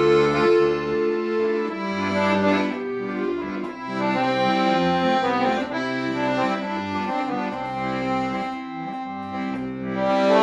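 Piano accordion playing a melody over sustained chords, with low bass notes that change about once a second.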